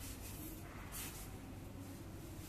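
Braided climbing rope rustling and sliding against itself as it is threaded through a figure-eight follow-through knot, with a short swish about a second in, over a faint low steady hum.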